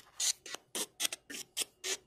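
Steve Hultay's Ghost Box app on a phone, played through a small JBL speaker, sweeping on its fast setting. It gives a rapid, choppy stream of short clipped bursts of noise and audio fragments, about four a second.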